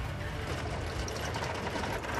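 Truck engine running steadily while driving, a continuous low rumble.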